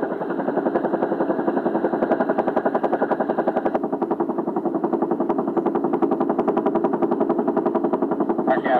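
Helicopter rotor blades chopping in a steady, rapid beat of about ten thumps a second.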